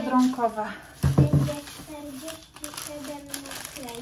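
Talking, partly a child's voice, with a short loud thump about a second in as groceries are handled.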